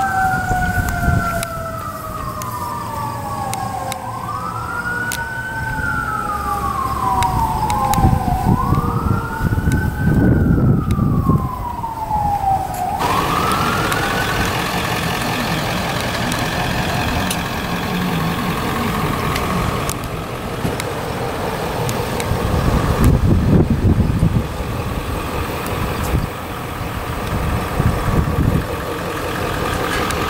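A siren wailing outdoors, rising quickly and falling slowly about every four seconds, with a second tone sliding slowly down beneath it. About 13 seconds in it cuts off abruptly, leaving a steady background of outdoor noise with low rumbles.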